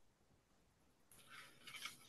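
Near silence in a pause between speech, with a faint soft hiss in the second half.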